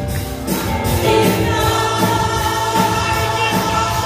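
Live gospel worship music: several women singing together in held notes over a band of keyboard, electric bass guitar and drums keeping a steady beat.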